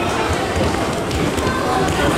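Busy sports-hall din during a children's futsal match: voices calling and shouting from players and spectators, mixed with the players' running footsteps on the wooden court, all ringing in the large hall.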